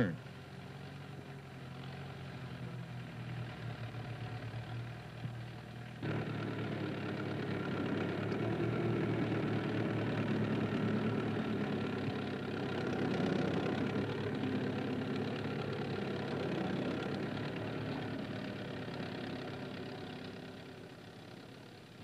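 Farm tractor engine running steadily while pulling a plough. About six seconds in it suddenly gets louder, then it slowly fades toward the end.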